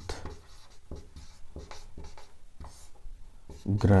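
Felt-tip marker writing on a whiteboard: a quick run of short, irregular strokes as handwritten words are added.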